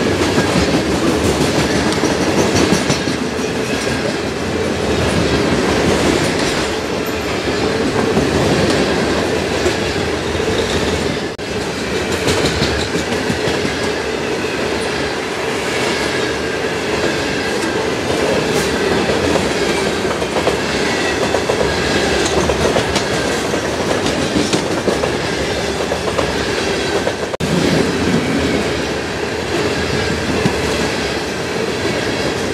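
Freight train of covered hopper cars rolling past close by: a steady rumble of steel wheels on rail with clickety-clack from the wheels passing over rail joints.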